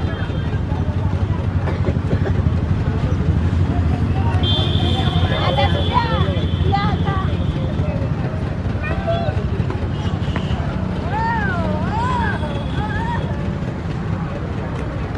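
A steady low rumble of road traffic with distant human voices. Among them, river terns give repeated calls, one a wavering call near the end.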